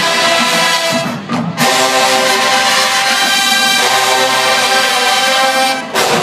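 Large marching band playing, led by brass in long held chords. The music breaks off briefly about a second in and dips again just before the end.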